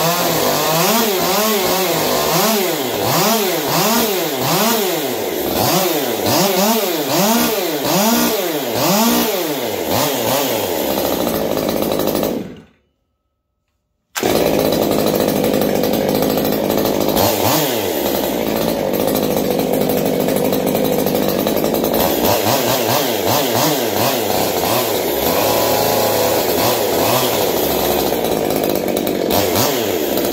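Freshly rebuilt Stihl MS 201 TC top-handle chainsaw's two-stroke engine being test-run: first blipped up and down in quick repeated revs, about one and a half a second, then, after a sudden silence of about a second and a half partway through, held at high revs with a few brief drops in speed.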